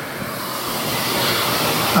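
Steady rushing background noise with no clear pitch, growing slowly a little louder.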